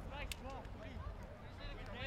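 Several distant voices shouting and calling over one another, too far off to make out words, with a low rumble of wind on the microphone.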